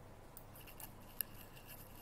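A few faint, sharp computer mouse clicks, the sharpest about a second in, over quiet room hiss, as nodes are clicked and dragged on screen.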